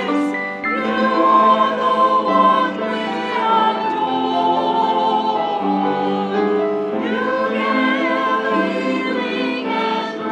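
Mixed church choir of men and women singing a slow anthem in sustained phrases, accompanied by grand piano.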